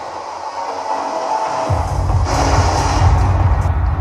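Psychedelic trance played loud over a club sound system: the heavy kick and bass are out for the first second and a half, then drop back in, with a bright hissing sweep layered on top soon after.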